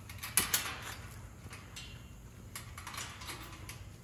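Metal wire kennel gate and its latch rattling and clanking as it is handled, with a cluster of clicks about half a second in and more around three seconds.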